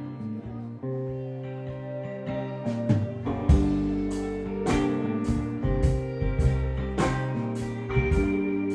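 Live band playing: electric guitar notes open the song, then the full band comes in about three and a half seconds in, louder, with a steady beat.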